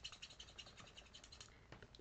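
Felt nib of an alcohol-marker colour lifter scrubbed rapidly back and forth on cardstock under firm pressure, a faint, even scratching, as it lifts ink off a coloured stamped image.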